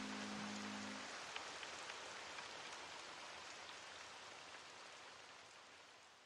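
Rain ambience with scattered drop ticks, fading out steadily towards silence at the close of a music track. The last low sustained notes of the music stop about a second in.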